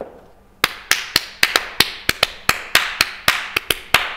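Sharp percussive strikes in a syncopated Latin cowbell-style beat, about four or five a second, starting about half a second in.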